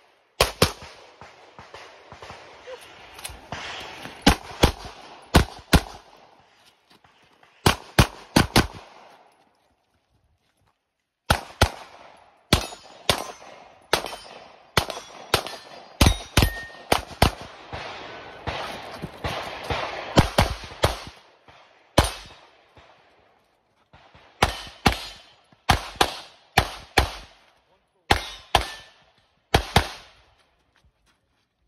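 Rapid strings of pistol shots from a red-dot-sighted Carry Optics competition pistol. Sharp cracks come in quick pairs and runs, with short pauses between strings. The sound drops out twice, for about a second and a half each time.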